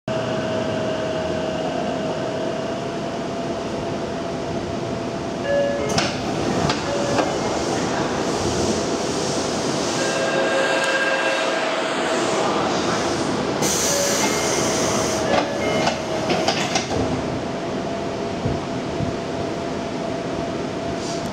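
Interior of a Tokyo Metro 6000-series subway car: the car's equipment hums steadily. Between about five and seventeen seconds in there are scattered clicks and short tones, and a burst of air hiss comes about fourteen seconds in.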